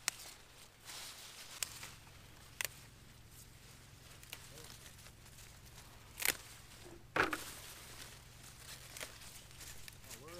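Pepper plants rustling and stems snapping as hot cherry peppers are picked off by hand: a handful of sharp snaps over soft leaf rustle, the loudest about seven seconds in.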